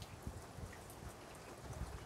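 Rain falling steadily, faint.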